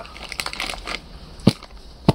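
Clear plastic pouch crinkling and rustling as it is handled, then a single sharp tap about one and a half seconds in.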